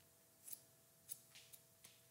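Haircutting scissors snipping through wet hair: four faint, short snips spread across two seconds.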